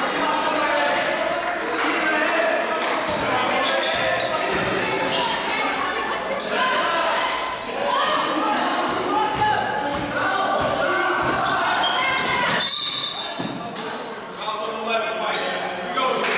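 Basketball game sounds echoing in a gym: players and spectators calling out and chattering over each other, the ball bouncing on the court floor, and a short high tone from the referee's whistle about three-quarters of the way in as play stops.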